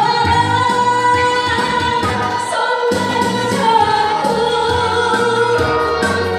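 A woman singing a song over musical accompaniment with a steady low beat, holding long notes.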